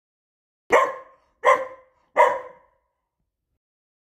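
Young golden retriever barking three times in quick succession, short sharp barks about three-quarters of a second apart.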